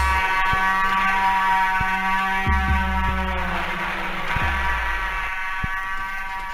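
Hard house dance track in a drumless breakdown. A sustained, buzzy synth chord holds while two deep bass swells come in about two and a half and four and a half seconds in.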